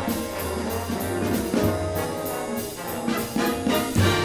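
Big band playing jazz: brass and saxophone sections sounding sustained chords over upright bass, piano and drums, with a steady beat on the cymbals.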